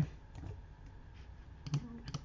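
A few faint, scattered clicks at a computer keyboard, with a brief vocal sound near the end.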